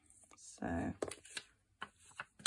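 Sliding-blade paper trimmer cutting a sheet of printed paper, followed by a few sharp clicks as the cut strip is handled.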